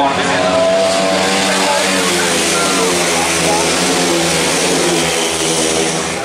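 Several grass track racing sidecar outfits' engines running together in a steady, loud mix as the outfits slide through a bend on the loose dirt track.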